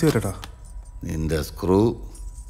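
Film dialogue: a man speaking a few short phrases with brief pauses between them.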